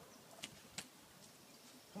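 Near silence: faint outdoor quiet with two brief faint clicks, about half a second and just under a second in.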